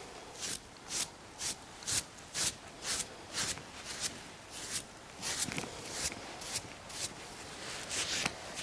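A grooming brush swished in steady strokes over a horse's coat, about two short strokes a second.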